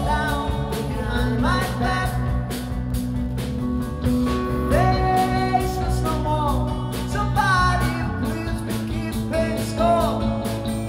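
Live rock band playing with acoustic and electric guitars, a steady strummed rhythm under a melody line whose notes slide up into their pitch.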